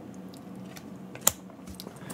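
Small clicks and taps of trading cards being handled and set down on a table, with one sharper click a little past a second in, over a faint steady hum.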